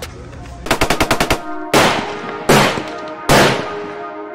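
Gunfire sound effects: a quick burst of about eight machine-gun shots about a second in, then three heavy single shots spaced under a second apart, each ringing out. A held brass-like music chord comes in under the shots and carries on.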